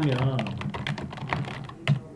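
Typing on a computer keyboard: a run of irregular key clicks, as the first half second's drawn-out voice fades away.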